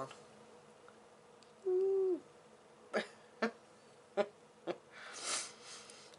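A woman hums a short, steady 'mm' about two seconds in, falling in pitch at its end. It is followed by four light clicks and a breathy exhale near the end.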